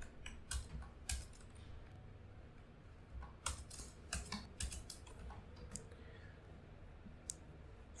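Faint computer keyboard typing: irregular key clicks in short flurries with pauses between them.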